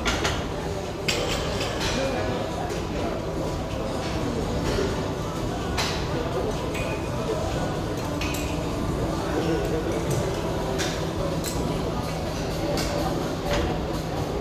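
Barbell with bumper plates lowered from overhead to a rubber gym floor, with a sharp knock about a second in and scattered metallic clinks and rattles of plates and collars. A steady murmur of voices from the gym runs underneath.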